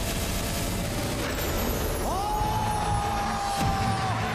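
Rapid drumroll-like beats for a TV score reveal, stopping about a second in. Then a noisy studio audience with one long, high held scream or call from about halfway on, as the winner is revealed.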